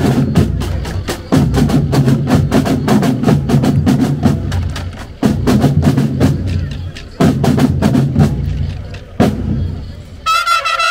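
Marching drum section of a school rhythmic band playing a percussion break of snare drums and bass drums in repeated phrases, each starting suddenly with dense strokes. A single loud hit comes near the end, then the drums drop off.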